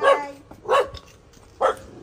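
A dog barking: three short, sharp barks about a second apart.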